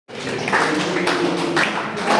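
A group of people clapping in time, about two claps a second, while voices sing along.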